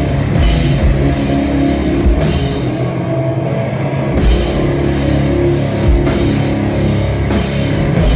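Live heavy rock band playing: distorted electric guitars, bass and drum kit with cymbals. About three seconds in, the drums and cymbals stop for about a second while guitar chords ring on, then the full band comes back in.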